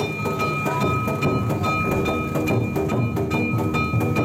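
Gion yamakasa float music: taiko drum and gong struck in a rapid, even beat, several strikes a second, over a steady high ringing tone, with the bearers' voices chanting underneath.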